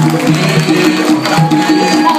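Afro-Cuban percussion music: hand drums play a repeating pattern of low pitched drum tones cut through by sharp strikes.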